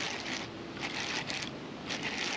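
Baitcasting reel being cranked under the load of a hooked bass, its gears whirring in a few short spurts.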